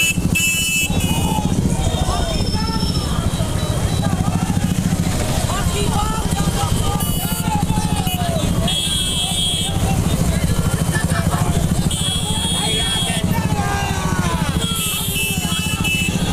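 Several motorcycle engines running together at low speed in a procession. Voices call and shout over them, and a short high-pitched tone sounds about five times, every two or three seconds.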